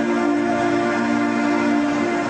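Live band music: electric guitars, bass and keyboard holding a steady sustained chord, several notes ringing together.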